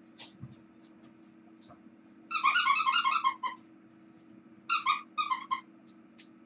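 A plush cat toy's sound chip chirping: a quick run of high, evenly pulsed chirps lasting about a second, then two shorter runs near the end.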